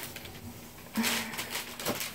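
Light clicks and rustling from handling a plastic syringe and medication vial, with a short scuffing burst and a brief low hum about a second in and another small click near the end.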